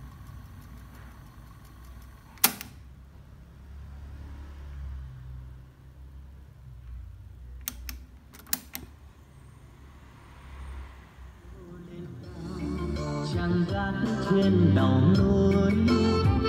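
Pioneer cassette deck's piano-key transport buttons clunking: one loud clunk about two and a half seconds in and a few quicker clicks around eight seconds. After that the tape plays back a recorded song with singing, which comes in about twelve seconds in and grows loud: a playback check of the deck's recording.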